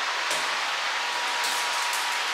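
A steady, even hiss, with a few faint knocks.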